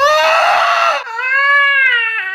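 A man's long, high-pitched, strained "eeeh" squeal, made with the voice. It is rough and raspy for the first second, then turns into a clear held tone that rises a little and falls away at the end, like the sound of someone straining on the toilet.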